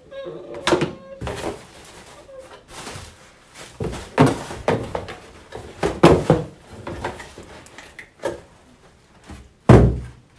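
Cardboard shipping boxes being handled, tipped and set down on a table: a string of thumps, knocks and scrapes, with the heaviest, deepest thump near the end.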